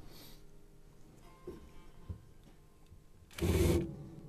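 Cordless drill with a small bit spun briefly, about half a second near the end, as a pilot hole is started in the wood of a piano soundboard rib. Before it, only a couple of faint knocks.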